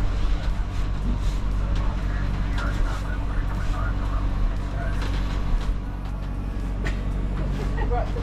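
Steady low rumble and hum from the sound system of a rocket-launch simulator.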